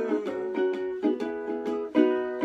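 Lanikai ukulele strummed in a steady rhythm, about four to five strokes a second, ringing chords.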